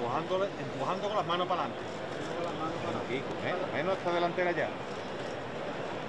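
Crowd murmur: several voices talking at once and overlapping, no words standing out, over a steady background hiss.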